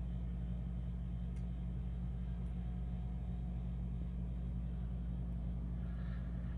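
Steady low hum, even in level throughout, with a faint thin whine joining it for a couple of seconds in the middle.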